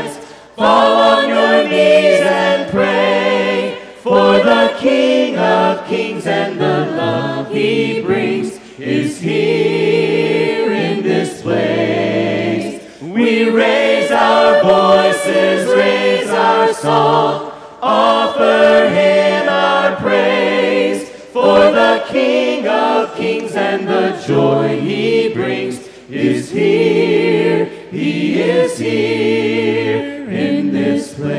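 Congregation singing a worship song together a cappella, many voices in harmony with no instruments, in sung phrases with short breaks between lines.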